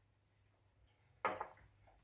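Near silence, then a single short knock about a second and a quarter in that dies away within a fraction of a second, as of kitchenware being struck.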